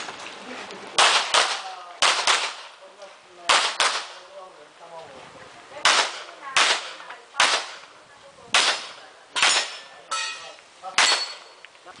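Handgun fire during a practical shooting stage: about a dozen sharp shots, mostly in quick pairs, with pauses of a second or two between groups as the shooter moves from target to target.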